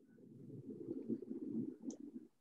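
A low, muffled rumbling noise, irregular and growing louder over the two seconds, with a short high click just before the end.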